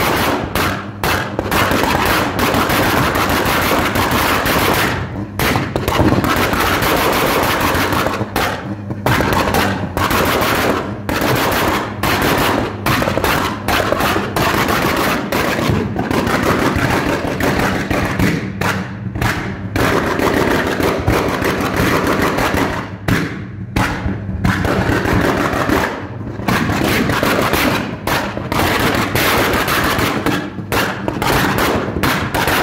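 Tuned turbocharged four-cylinder hot hatches (a VW Scirocco R and a SEAT Leon Cupra) revved with pop-and-bang exhaust maps, giving rapid loud crackles and bangs over the engine drone, in bursts broken by short lulls every few seconds.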